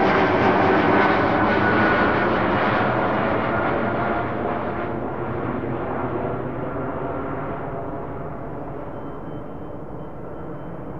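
Jet airliner engine noise, loud at first and fading steadily, the hiss at the top dying away, with a faint whine that slides slightly down in pitch.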